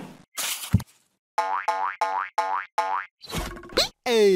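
Cartoon sound effects: a short whoosh and a thump, then a quick run of identical springy boings, about three a second, and near the end a burst of noise with a sharp rising glide.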